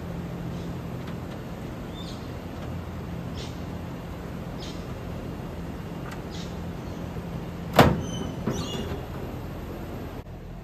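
Sheet-metal service panel being taken off a Daikin outdoor air-conditioning unit: a few faint small ticks, then one sharp metallic clang nearly eight seconds in as the panel comes free, followed by lighter scraping knocks. A steady low machine hum runs underneath.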